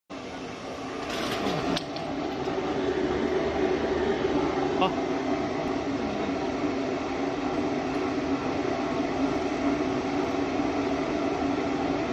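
Sesame seed washing and peeling machine running: a steady mechanical hum from the electric motor and gear reducer that drive its agitator, growing louder over the first few seconds.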